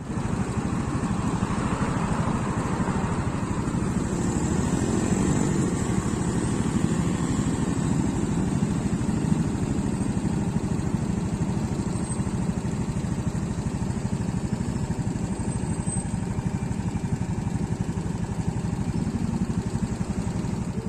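A motorcycle engine running steadily close to the microphone, a dense low rumble of firing pulses that starts suddenly and holds an even level.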